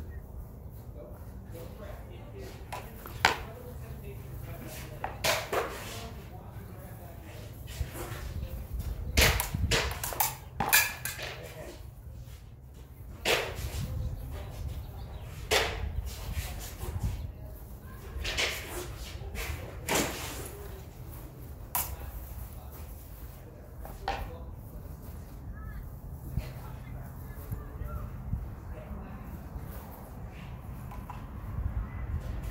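Steel sparring swords, a rapier and a jian, clashing in a dozen or so sharp, short impacts scattered irregularly, with a quick run of several clashes about a third of the way in. A steady low rumble runs underneath.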